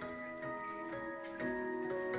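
A live band playing: held notes stacked in chords, shifting in pitch about every half second, with light ticking percussion underneath.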